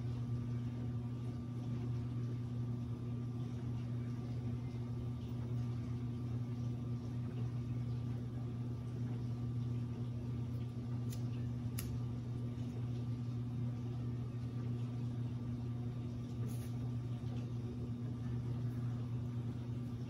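Steady low mechanical hum with a faint higher tone above it, running evenly throughout, with a couple of faint clicks about halfway through.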